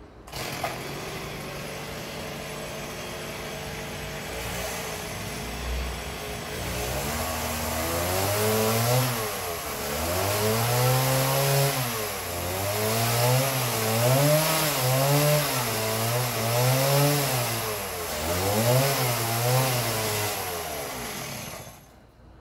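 A small engine running, steady at first. From about seven seconds in it revs up and down over and over, roughly once a second, like a motor working under changing load.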